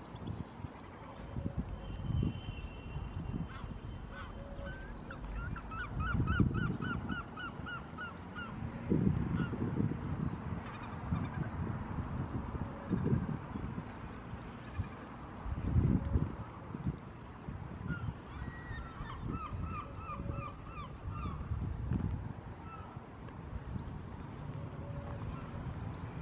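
A bird calling in two quick runs of short repeated notes, about five a second, about five seconds in and again near the end, over scattered low rumbling bumps that are the loudest sounds.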